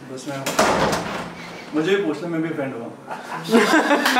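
Men's voices talking and then laughing loudly near the end, with a short sharp knock about half a second in.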